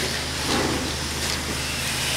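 A steady low machinery hum under a broad, even rushing noise.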